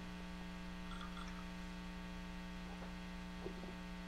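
Steady electrical hum with several faint steady overtones, and a faint brief sound about three and a half seconds in.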